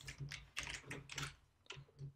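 Computer keyboard being typed on: a faint, quick, uneven run of keystrokes.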